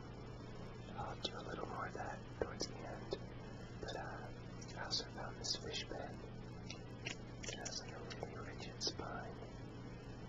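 Close-miked handling of a ribbed, flexible plastic tube as it is bent: irregular soft clicks and crackles.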